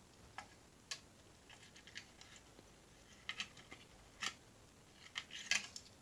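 Faint, scattered clicks and light taps of small 1:64 diecast model cars being handled and set down on a mat, with a quick cluster of the loudest clicks about five and a half seconds in.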